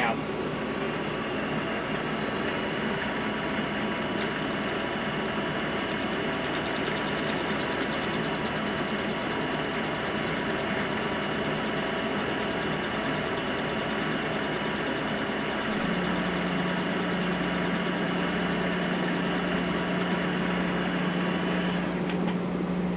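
Small metal lathe running steadily, its motor humming, while a razor blade held against the cutoff tool scores a round line into a spinning circuit board. The low hum grows stronger about three-quarters of the way through.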